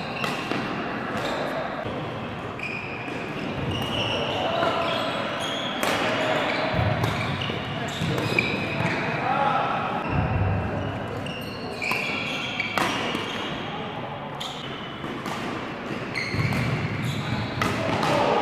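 Badminton doubles rally in a large sports hall: sharp racket strikes on the shuttlecock come at irregular intervals, with short high shoe squeaks on the court floor. Voices carry from the neighbouring courts.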